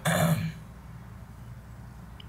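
A man clearing his throat once, a short rasping burst of about half a second.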